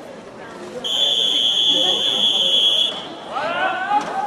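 Swimming referee's long whistle blast: one steady high tone lasting about two seconds, starting about a second in, the signal for the swimmers to step onto the starting blocks. A voice calls out near the end.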